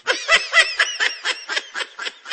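High-pitched laughter, a rapid run of short giggling bursts, about seven a second.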